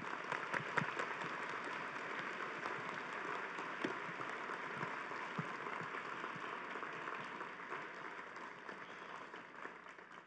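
A large audience applauding steadily, dense clapping that begins as the lecture ends and thins out near the end.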